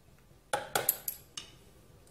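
A quick cluster of sharp clicks and clinks about half a second in, then one more a moment later: a thin-bladed knife scraping crab meat off pieces of crab claw shell.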